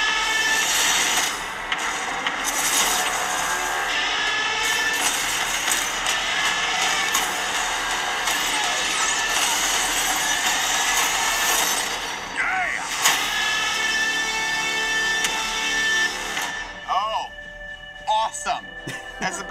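Film trailer soundtrack: loud music with sharp hits and sound effects. Near the end the music drops away to something quieter.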